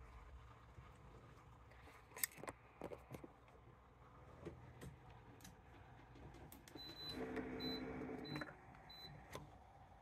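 Electric heat press clamping down at 385°F: a few handling clicks, then a steady motor hum for about a second and a half under a run of short high beeps, about two a second.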